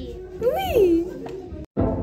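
A young girl's high voice gives one rising-then-falling exclamation about half a second in. Near the end the sound cuts out for an instant and music with a steady drum beat starts.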